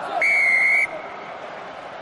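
Rugby referee's whistle: one short, steady blast of well under a second, awarding a penalty at the ruck.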